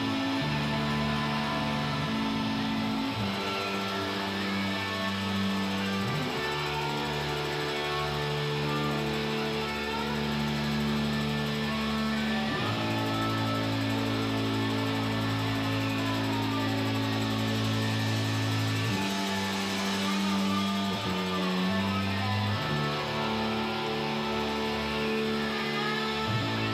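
Live rock band playing loudly: long held, droning bass and guitar chords that shift to a new chord every few seconds.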